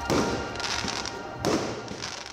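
Two firework bangs about a second and a half apart, followed by crackling, over the tail of a song.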